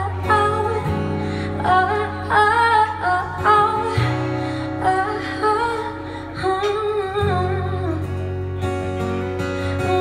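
Live female vocals with acoustic guitar accompaniment: the singer's voice comes in short phrases over the steady guitar.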